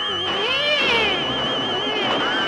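An electronic warbling tone, high and wavering finely but steady in pitch, holds throughout. About half a second in, sweeping tones rise and fall over it.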